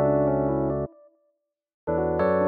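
Electric piano from the Lounge Lizard EP-4 software instrument playing a sustained chord pattern that stops abruptly just under a second in. A short fading tail follows, then about half a second of silence, and the pattern starts again near the end, restarted from an earlier point in the loop.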